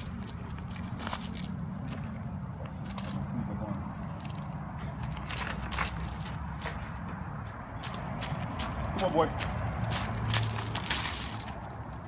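Footsteps crunching irregularly on gravel landscaping rock, over a steady low hum.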